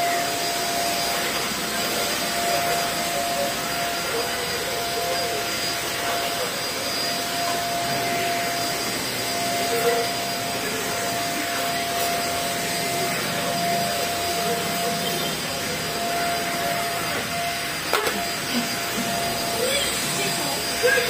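Vacuum cleaner running steadily with a constant whine, its floor head being pushed across a tiled floor.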